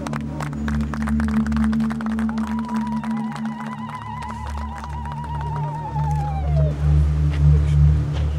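Crowd clapping, with a long, high, wavering ululation starting about two and a half seconds in and sliding down and ending near the seven-second mark.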